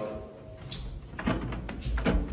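A door latch and handle clicking a few times in the second half, the sound of a locked door being tried.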